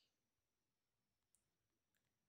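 Near silence, broken by two or three very faint, brief clicks.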